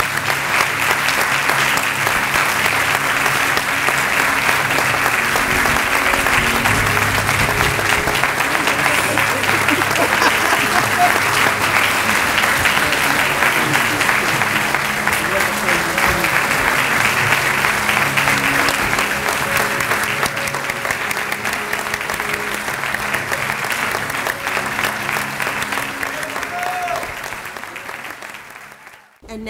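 Audience applauding steadily, with a song playing underneath; the applause tapers off near the end.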